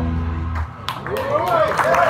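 A jazz organ trio's final held chord, with organ and deep bass, cuts off about half a second in; moments later the audience breaks into applause with voices calling out.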